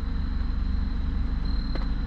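Hyundai Genesis Coupe's engine idling steadily, heard from inside the cabin as an even low rumble with a faint steady high whine above it.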